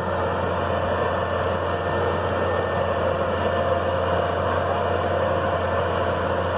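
Diesel engine of a Massey Ferguson MF 9330 self-propelled sprayer running steadily as the machine crawls over a rocky bank, its loose stones not making the wheels slip.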